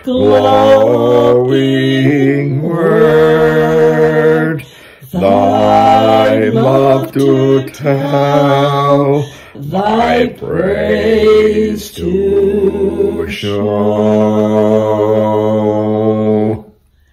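A man singing a hymn solo and unaccompanied, in phrases of long held notes with short breaths between.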